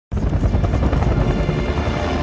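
Loud, low rumbling intro sound effect with a fast flutter, cutting in abruptly at the start, with music.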